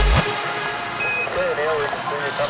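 Hardstyle track: the kick-driven drop cuts off about a fifth of a second in, leaving a quieter breakdown with a held synth background. From about one and a half seconds a wavering vocal line comes in.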